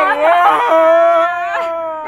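Several people wailing loudly at once, their long held cries overlapping at different pitches in a chorus of exaggerated crying.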